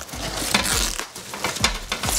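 Plastic wrapping and cardboard packaging rustling and crinkling as it is pulled off an aluminum hatch lid, with a few small knocks.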